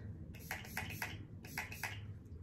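A series of faint, short clicks and taps as a small pump spray bottle and a makeup brush are handled.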